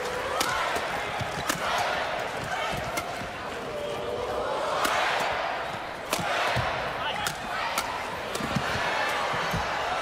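Badminton rackets striking the shuttlecock in a fast doubles rally, sharp cracks about once a second, over arena crowd noise that swells and fades.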